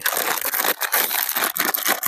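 Clear plastic bag packed with elastic rubber plant ties crinkling as it is handled and turned over, a dense crackle of plastic.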